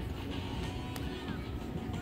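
Busy outdoor beach background: a steady low rumble with faint voices and music mixed in, and a single sharp tap about a second in.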